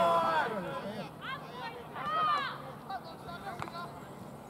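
Several loud, high-pitched shouted calls during open play in a rugby league match, in three short bursts over the first two and a half seconds, over faint outdoor crowd babble.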